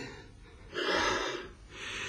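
A person's breathy gasp: a louder breath about a second in, then a fainter second breath near the end.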